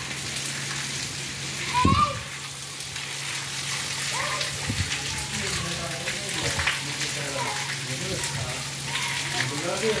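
Steady hiss of rain falling on a wet paved surface, with young children's shouts and calls over it; the loudest is a high shout about two seconds in.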